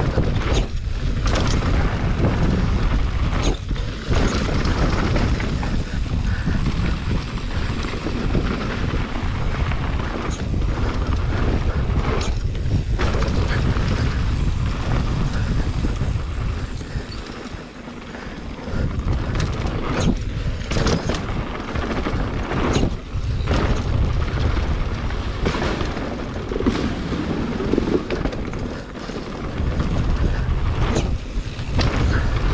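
Wind buffeting the microphone of a camera riding on a mountain bike descending a dirt trail, mixed with tyre roll on dirt and frequent knocks and rattles from bumps. It eases briefly a little past halfway.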